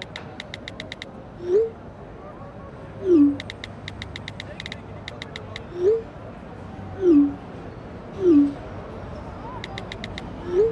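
iPhone keyboard clicks in quick bursts as messages are typed, with two short rising iMessage send sounds and three short falling tones for incoming messages; the send and receive tones are the loudest sounds.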